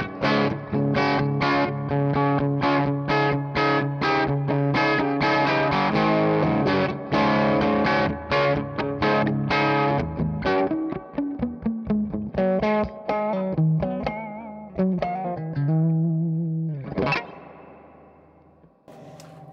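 Overdriven electric guitar through a Divided by 13 EDT 13/29 valve amp head with KT66 power valves, running in class A with a touch of reverb. Fast rhythmic chords for about ten seconds, then looser single notes and a held chord that rings out and fades near the end.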